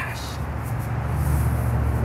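Steady low background rumble with no distinct knocks or swishes.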